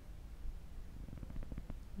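Quiet room tone: a steady low hum, with faint small clicks in the second half.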